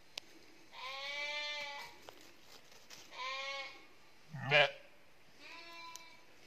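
Sheep bleating: three drawn-out, quavering bleats, the last one short. A short, much louder, harsher call comes about four and a half seconds in.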